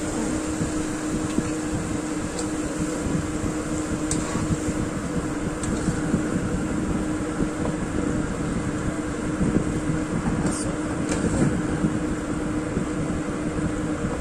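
A steady mechanical hum with a low rumble from the kitchen, with a few light clicks as a plastic spatula turns rice vermicelli and vegetables in a wok.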